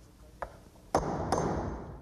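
Steel hammer striking a 10-penny finish nail, fixing a door jamb through a shim into the framing. A light tap comes first, then two sharp, ringing metallic blows about a second in.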